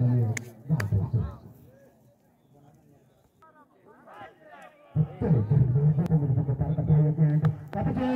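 Men's voices talking and calling out on an open field, with a quiet stretch of about three seconds in the middle. A few short sharp clicks stand out.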